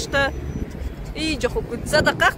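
Snatches of a high voice talking, over a steady low rumble of cars passing on the road.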